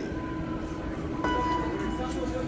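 A vehicle's steady mechanical hum with a whine, and a low rumble that swells a little past a second in.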